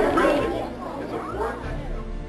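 Children's voices chattering together, dying away, with background music starting near the end.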